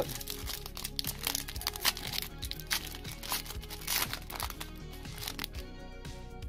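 Foil wrapper of a 2020 Panini Contenders baseball card pack crinkling and crackling in the hands as it is torn open and the cards are pulled out; the crackling thins out near the end. Quiet background music runs underneath.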